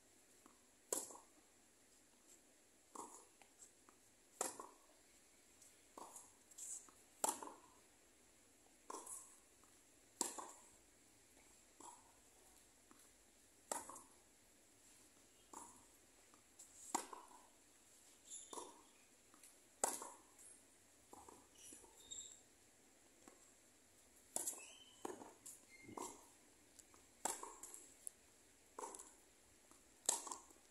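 Tennis racquets hitting a ball back and forth in a long rally on a hard court: sharp knocks of the racquet strikes and the ball's bounces every second or two.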